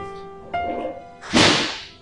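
Suspense film score of plucked-string notes, with a sharp rush of noise swelling in and dying away about a second and a half in, the loudest sound here.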